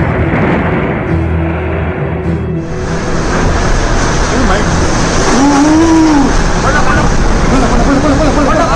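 Cyclone-force wind blowing hard across a phone microphone, a loud, steady rushing noise that grows brighter about three seconds in. From about five seconds in, people's voices cry out over it.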